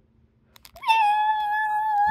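A single high-pitched, drawn-out cry that starts about a second in and is held steady on one pitch.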